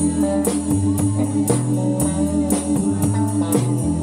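Live blues band playing an instrumental passage without vocals: electric guitar and keyboard over a low bass line, with a drum kit keeping a steady beat of about two strokes a second.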